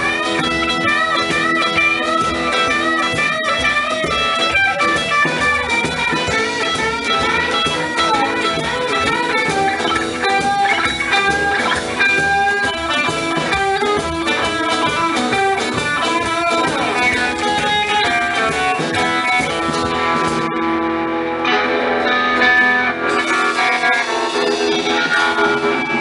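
Instrumental break of a live honky-tonk song: an electric guitar plays a lead line with bending notes over upright bass, strummed acoustic guitar and drum kit, with no singing.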